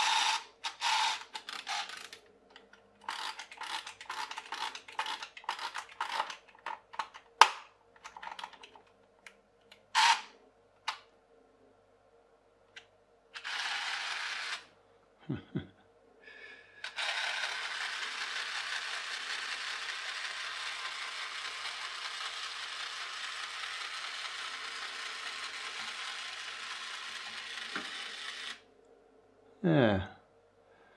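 Clockwork spring motor of a toy rigid inflatable boat being wound by hand, a run of clicks, then a short whir. From about 17 s it runs with a steady whir for about eleven seconds as its propeller turns in the water, stopping suddenly near the end. The motor has just been sprayed with lubricant.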